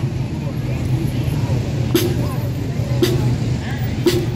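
Marching band drum struck a few single times, roughly a second apart, as a slow drum tap. Crowd voices and a steady low engine hum run underneath.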